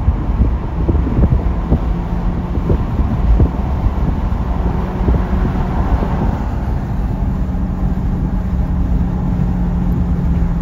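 Maserati GranTurismo's V8 cruising at steady speed, heard from inside the car: a steady low engine drone with tyre and wind noise, and a few light knocks in the first few seconds.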